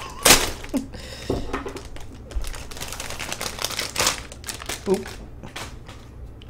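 Plastic toy packaging rustling and crinkling as it is handled and opened, with a few sharp clicks scattered through, then a short laugh near the end.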